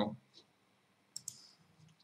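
Two quick, faint clicks close together just over a second in, as at a computer desk, in an otherwise quiet room.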